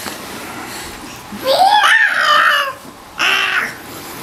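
A young child's high-pitched squeal during play, rising and falling over about a second, followed by a shorter shout near the end.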